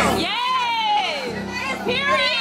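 High-pitched voices hold long, falling notes over music with a steady low pulse.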